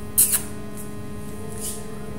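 Two short, sharp, high-pitched squeaks in quick succession about a quarter second in, and a fainter one near the end, over a steady electrical mains hum.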